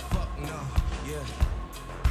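Live electronic band music: a heavy kick drum beats about every 0.6 s under synthesizer lines, with a steady high tone and a gliding melodic line.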